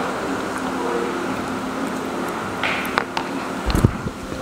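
Steady background hum of the room, like ventilation running, with a short scrape, a few light clicks and a dull thump near the end.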